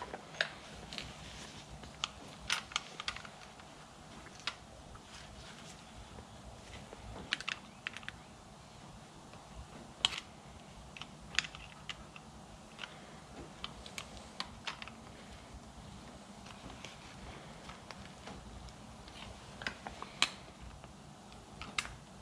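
Irregular light clicks and taps of plastic parts being handled: gloved hands working a fuel line and grommet assembly into the plastic fuel tank of an Echo CS-360T chainsaw, with a faint steady low hum underneath.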